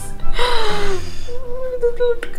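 Background music: a slow melody of a falling note followed by held notes.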